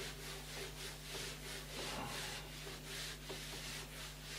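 Duster wiping marker writing off a whiteboard in repeated back-and-forth strokes, about two a second.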